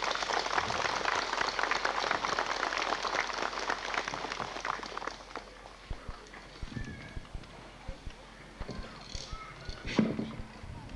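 A crowd applauding: a thick patter of clapping that thins out and fades after about five seconds. A few low thumps and faint voices follow.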